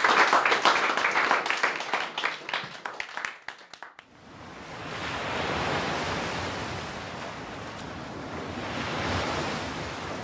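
Audience applause thinning out and dying away over the first four seconds, then the wash of sea waves swelling and ebbing in slow surges.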